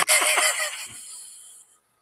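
A woman laughing, breathy and trailing off over about a second and a half, then a moment of dead silence.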